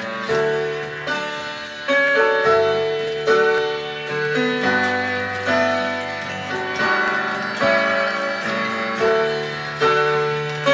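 Yamaha electronic keyboard played with both hands in a piano-like voice: a slow pop-ballad instrumental passage, with sustained chords and melody notes struck about once a second and no singing.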